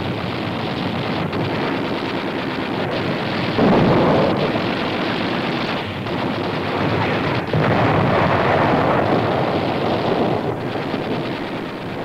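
Shellfire on an old newsreel soundtrack: a continuous rumble of explosions, with two heavier blasts swelling up about three and a half and seven and a half seconds in.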